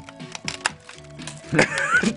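Irregular sharp clicks and cracks of a blade being jabbed into a broken computer monitor's casing and screen, over background music.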